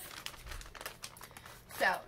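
Small plastic snack packet of gummy bears crinkling as it is handled, a quick, irregular run of small crackles.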